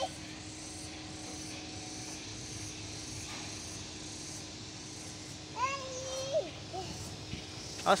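Steady faint background hiss with a low hum, broken once about six seconds in by a child's short high-pitched call.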